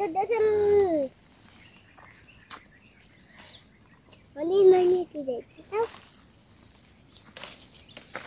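Insects buzzing steadily and high-pitched in the surrounding vegetation, with two short voice sounds from a person, one in the first second and another about halfway through.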